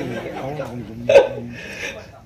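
People laughing and chuckling, with one short louder burst of laughter about a second in.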